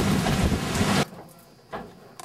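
Hurricane Jeanne's gusting wind blowing hard across the microphone, in gusts the onlooker puts at about 70 mph. It cuts off suddenly about halfway through, leaving only faint handling noise and one soft knock.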